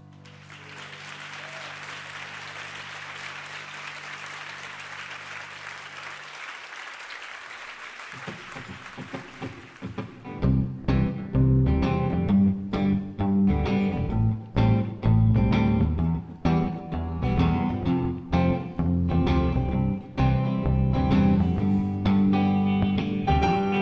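An audience applauds while the last low notes of a song ring out and fade. About ten seconds in, a band with electric guitar, bass guitar and drums starts the next song with a steady beat.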